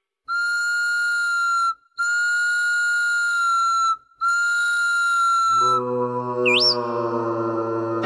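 A cartoon chick's imitation of a cow's moo, heard as three long, steady, high whistle-like peeps with short breaks between them. A low sustained tone then comes in, with a quick rising-and-falling whistle swoop partway through it.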